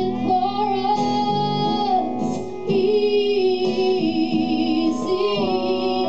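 A woman singing long held notes into a microphone over a strummed acoustic guitar; the later notes waver with vibrato.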